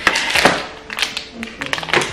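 Plastic grocery packaging being handled on a kitchen counter: a rustle and tap as a plastic berry punnet is set down, then quieter rustling and light taps.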